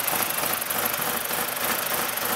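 BMW 318's four-cylinder engine running steadily after being deliberately fed water, still going but sounding sick.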